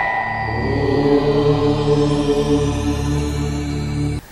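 Short devotional music sting: a bell struck just before rings out and fades, and about half a second in a low, held, chanted drone comes in under it. The music cuts off abruptly at the end.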